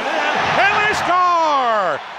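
A hockey play-by-play commentator's voice, ending in a long, falling drawn-out call, with one sharp crack about a second in.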